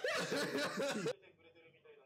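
A man snickering and chuckling for about a second, cutting off sharply, followed by faint speech from a TV episode playing in the background.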